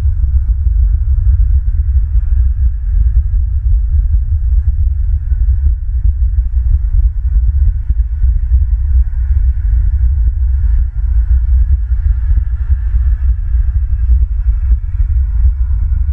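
A loud, steady low rumble that does not let up, with a faint hiss higher up.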